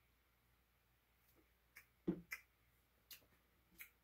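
Near silence broken by a handful of faint, short mouth clicks and lip smacks after sipping a milkshake through a straw. There is a soft knock about two seconds in as the plastic cup is set down on the table.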